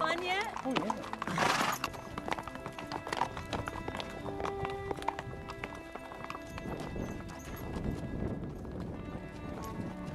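Horses walking, their hooves clip-clopping on sandstone slickrock, with music playing underneath. There is a short loud burst of noise about a second and a half in.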